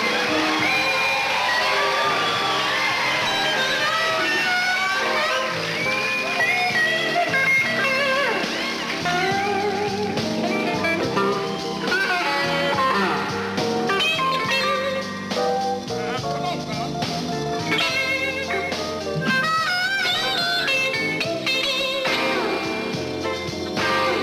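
Electric blues guitar solo with bent notes and wavering vibrato, played over a slow blues band backing.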